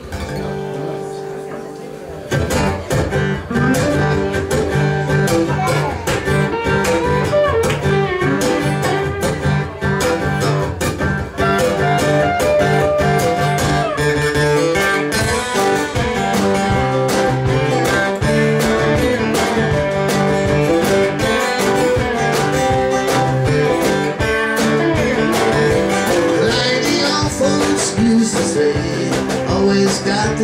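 Acoustic guitars playing a song's instrumental intro: a held chord for about two seconds, then steady strumming and picking.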